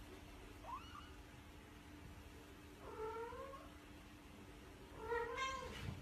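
A young kitten mewing: a short high squeak, then two rising-and-falling meows a couple of seconds apart, the last the loudest.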